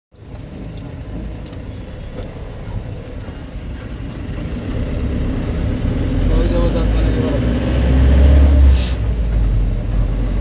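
Pickup truck's engine and road noise heard inside the cab while driving, a low rumble that grows louder over the second half. A brief hiss comes near the end.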